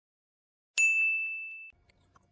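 A single high ding that rings clear and fades for about a second before cutting off abruptly.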